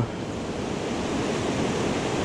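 Fast river rapids: a steady rush of whitewater over rocks.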